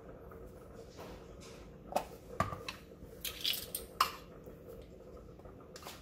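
A few light clicks and knocks as a baking powder can is picked up and its lid pried open, with a measuring spoon handled beside a steel mixing bowl. The sharpest clicks come about two to four seconds in, over a faint steady hum.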